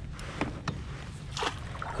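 Water splashing beside a kayak as a hooked bass thrashes at the surface close to the boat, with a few short splashes.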